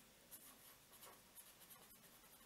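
Faint scratching of a felt-tip pen on paper, in short strokes, as a line is drawn and letters are written.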